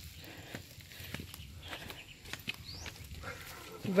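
Faint outdoor sounds: scattered light clicks and rustles, with one short rising chirp about two and a half seconds in.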